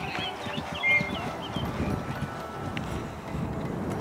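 Hoofbeats of a horse cantering on grass turf: an uneven run of dull thuds. A few short high chirps sound in the first second or so.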